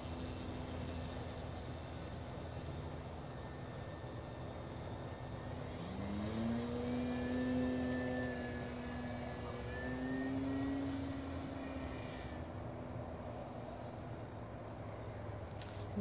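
Radio-controlled floatplane's motor and propeller droning as it runs across the water, rising in pitch about six seconds in as the throttle opens for takeoff, then fading after about twelve seconds as the plane climbs away.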